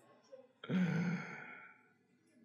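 A person's drawn-out voiced sigh, about a second long, starting about half a second in and fading out.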